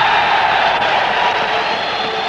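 A steady, hiss-like wash of noise with a faint high tone, fading slightly, such as the background of an old film soundtrack or a distant crowd.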